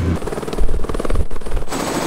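Helicopter rotor chopping in a rapid, even beat close to the microphone. The chopping changes abruptly about three-quarters of the way through.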